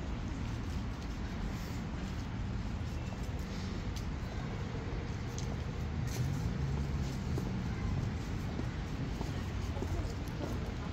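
City street traffic noise: a steady low rumble of passing vehicles, with one engine getting louder and changing pitch from about six seconds in.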